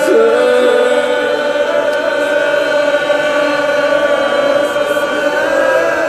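A reciter's voice chanting long, held, wavering notes of a Muharram rawzeh lament.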